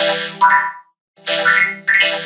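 Cartoon-style logo jingle from an effects-edited children's channel intro, played in two short phrases with notes that slide upward. A brief gap of silence falls between them, just under a second in.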